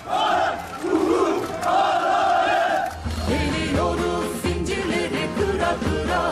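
A large crowd of marchers shouting together for about three seconds, then music with singing comes in.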